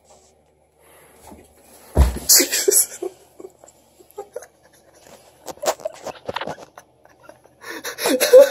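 A heavy thump about two seconds in as a person's body lands hard on the floor during a clumsy somersault, followed by scuffing and small knocks of moving on carpet. Laughter starts near the end.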